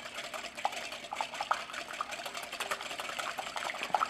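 Wire whisk beating eggs in a glass mixing bowl: steady sloshing of the liquid egg, with many light ticks of the metal tines against the glass.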